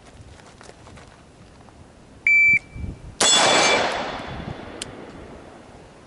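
Shot timer's start beep, then just under a second later a single AR-style rifle shot fired from the ready position, its report echoing away over about two seconds.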